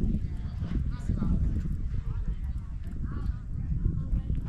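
Voices of players and spectators calling out faintly across a baseball field, over a constant low rumble.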